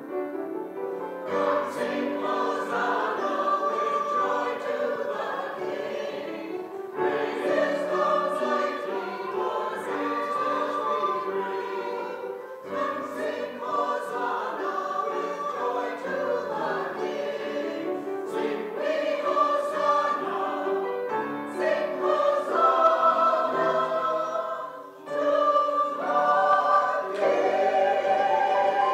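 Small mixed choir of men's and women's voices singing an anthem in sustained phrases, with brief breaks between phrases, one near the middle and one near the end.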